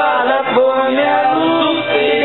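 A man singing karaoke into a handheld microphone over a backing track, holding long sung notes.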